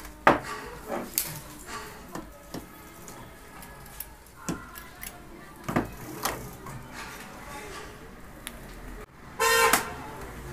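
Light clicks and taps of a screwdriver, wire ends and small metal parts against the thermostat and terminals of an electric iron being rewired. Near the end, a loud half-second honk.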